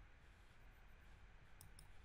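Near silence: room tone with a low hum, and two faint computer mouse clicks in quick succession near the end.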